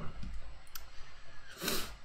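A pause between sentences of a talk, picked up by the presenter's microphone: low room tone with a few faint clicks, and a short breath-like hiss near the end.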